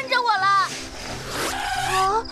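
A high-pitched cartoon character's voice speaking with strongly gliding pitch, with a short rushing whoosh of noise in the middle, over faint background music.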